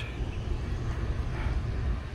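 Steady low outdoor rumble with a faint hiss, no distinct events.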